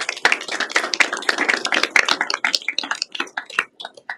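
Audience applauding: a burst of hand clapping that thins out and dies away near the end.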